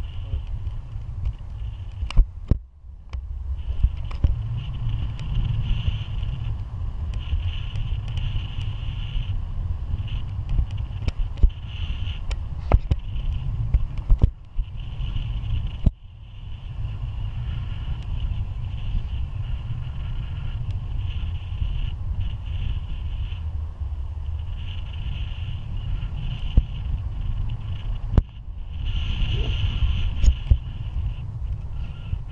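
Wind rushing over the microphone of a camera held out from a flying tandem paraglider: a steady, rough buffeting with a fainter hiss above it, dropping away briefly a couple of times, with a few small knocks.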